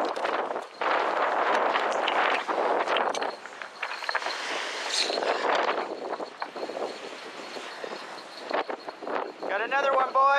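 Strong wind and lake waves breaking on a rocky shore: a loud, gusting rush that swells and fades. A voice comes in near the end.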